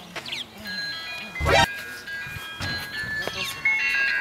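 Mobile phone ringing: a simple electronic ringtone melody of steady beeping notes that starts about a second in and carries on. A brief loud exclamation cuts across it about one and a half seconds in.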